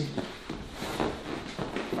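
Rustling and shuffling of a person turning over from lying face down to lying on her back on a padded, vinyl-covered treatment couch, with soft knocks of body and shoes on the padding.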